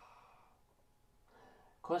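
A man's long, breathy sigh, fading out about half a second in, then a short breath in just before he starts speaking near the end.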